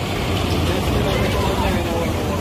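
Indistinct voices over a steady low rumble that swells up at the start and then holds.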